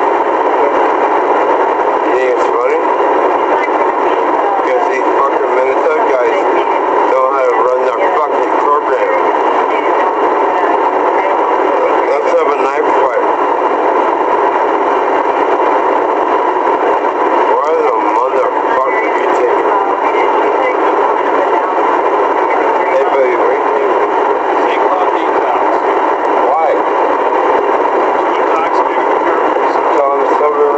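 A constant loud hiss with muffled voices under it that cannot be made out, like speech heard over a radio or a poor recorder.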